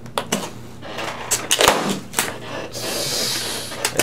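Rubber balloon being blown into and worked open by hand: scattered squeaks and snaps of the rubber, a louder snap a little before halfway, and a short hiss of air about three seconds in.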